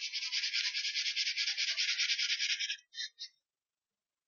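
A pen scratching across a drawing surface in quick back-and-forth colouring strokes, about seven a second, for nearly three seconds, then two short strokes a little after.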